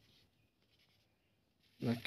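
Faint rubbing and handling of a small plastic Zebronics portable Bluetooth speaker turned over in the hand, with a short click at the start. A man's voice begins near the end.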